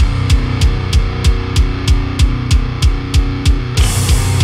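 Heavy metal band playing an instrumental passage: distorted guitars over drums, with a cymbal struck about three times a second and a steady kick drum underneath.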